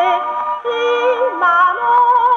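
A 78 rpm shellac record of a Japanese children's song, a young girl singing with orchestra, played acoustically on a Victor gramophone through its soundbox and steel needle; the sound has no high treble. The voice breaks off briefly about half a second in and starts a new phrase.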